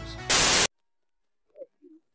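A short, loud burst of TV-static hiss, used as a transition sound effect, cutting off abruptly about half a second in.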